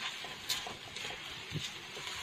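Noodles sizzling in a hot nonstick wok as the last of the sauce cooks off, stirred with a silicone spatula, with a couple of light knocks of the spatula against the pan.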